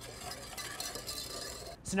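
Wire balloon whisk stirring dry sugar, cornstarch and salt in a stainless steel saucepan: a steady scratchy rustle of the wires against the pan, stopping just before the end.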